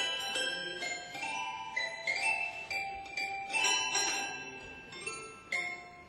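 Toy pianos playing a piece together: many bright, bell-like struck notes ringing over one another.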